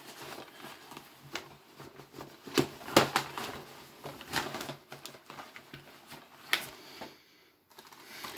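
Plastic Blu-ray cases being handled and one drawn out: irregular clicks and clacks with some rustling, the sharpest clack about three seconds in.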